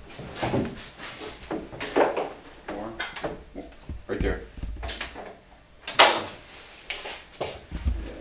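Wooden boards handled and knocked on a workbench: scattered short knocks and clicks, with the sharpest one about six seconds in.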